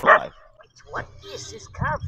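A dog barking: a loud sharp bark right at the start and another short one about a second in.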